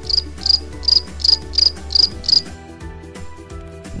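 Cricket-like chirping: short, high chirps about three a second, which stop about two and a half seconds in, over a steady low hum.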